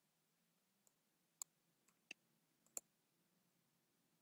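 Near silence with three faint, sharp computer mouse clicks, about two-thirds of a second apart, starting about a second and a half in.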